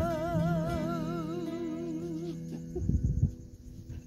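A woman holds the song's final sung note with wide, even vibrato over backing music, and the note ends a little over two seconds in. A few low bumps follow as the music fades out.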